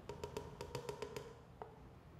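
Olive oil glugging out of a bottle into a glass jar: a quick run of faint clicks over a faint steady tone, fading out about a second and a half in.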